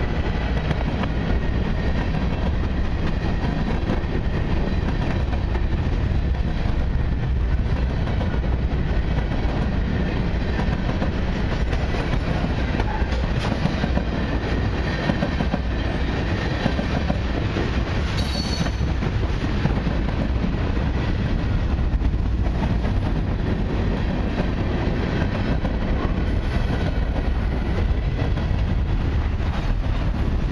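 Freight train cars, covered hoppers and tank cars, rolling past close by: a steady rumble of steel wheels on the rails.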